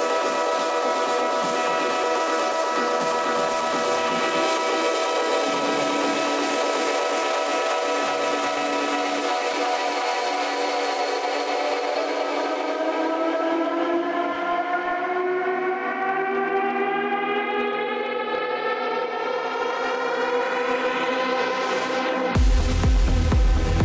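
Drumless breakdown of an electronic dance track: a sustained synthesizer chord with no bass or beat. Over the second half the chord sweeps upward in pitch, rising faster toward the end as a riser building to the drop.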